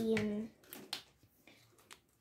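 A child's voice holds a short 'E', then four or so faint, sharp clicks follow over the next second and a half.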